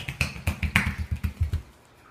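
A quick patter of small bare footsteps slapping on a tile floor, about seven steps a second, stopping about one and a half seconds in.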